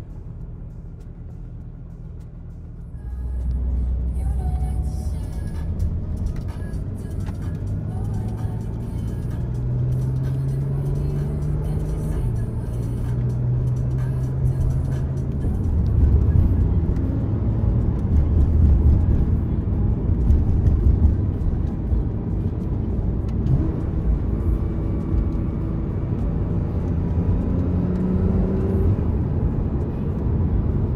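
Car engine and road rumble heard from inside the cabin while driving, growing louder about three seconds in as the car gets moving. The engine note rises and then drops back a few times as it changes gear.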